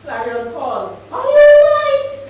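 A woman's voice through a microphone, speaking emphatically and then holding one loud, high, drawn-out vowel for about a second near the end.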